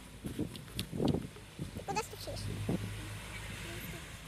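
Short, indistinct snatches of voice with pauses between them, and a low hum for about a second in the middle.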